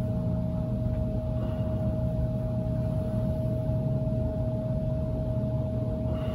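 A steady low droning hum with one constant tone held above it, unchanging throughout.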